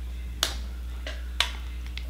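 Small sharp clicks from makeup being handled: two louder ones about a second apart, with fainter ones between.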